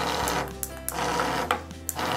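Magic Meemees toy figures reacting: their small motors buzz as they shuffle and turn on a wooden tabletop, with a few light clicks.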